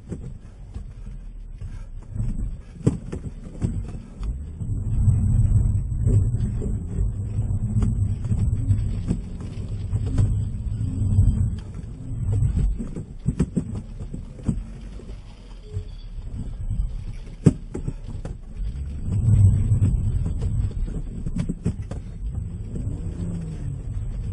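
A car's engine and tyres heard from inside the cabin as the car struggles for traction in snow: a low rumble that swells and fades in long waves, with occasional knocks.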